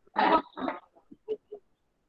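A participant's voice over a video-call connection, two short garbled vocal sounds in the first second, then a few faint broken-up fragments.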